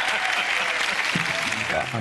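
Studio audience applauding, a dense steady clatter of clapping that cuts off abruptly near the end.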